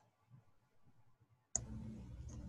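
Near silence, then about one and a half seconds in a sharp click and a steady low hum start, as a voice-call microphone opens.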